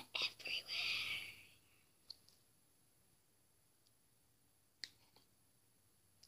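A breathy whisper for about the first second and a half, then near quiet with two faint sharp clicks, about two seconds in and near the end, from small scissors being worked into a mesh squishy ball.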